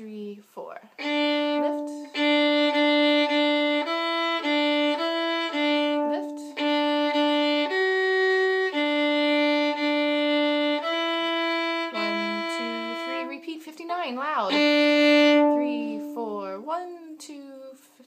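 A single violin bowing a march part: mostly long held notes, with runs of short repeated notes and brief breaks between phrases.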